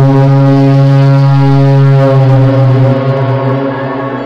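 A loud, low, horn-like roar standing for the giant Hanoman effigy's roar, one held steady tone for about three seconds that fades near the end.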